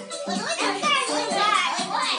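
Several children's high voices calling out over background music.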